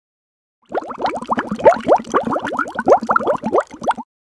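Bubbling sound effect: a rapid run of short rising bloops, several a second. It starts about a second in and cuts off sharply at the end.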